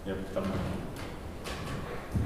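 A man's brief "mm-hmm" and a muttered word near the start, then low room tone with faint small knocks.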